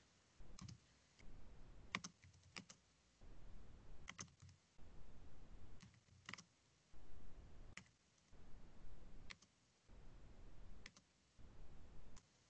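Faint computer keyboard typing, with separate key clicks about a second or two apart as a short chat message is typed.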